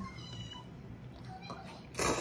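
Faint, brief high-pitched squeaky tones, then a person starts slurping cold soba noodles loudly right at the end.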